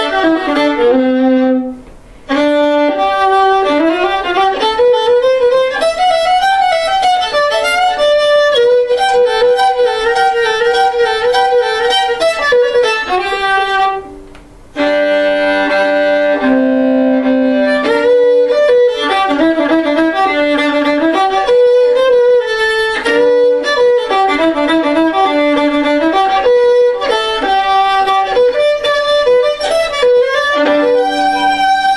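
A handmade five-string fiddle, a violin fitted with Prim strings and a Prim viola C string, bowed solo in a quick moving melody with a warm, deep tone. The playing breaks off briefly about two seconds in and again about halfway through.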